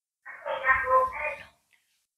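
A short, high-pitched voice in a few connected pulses lasting about a second.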